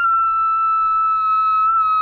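A man's long, high-pitched scream held on one steady note. It is his horrified reaction to finding a hated movie.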